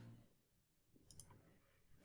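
Near silence broken by a faint computer mouse click a little over a second in, a quick press and release.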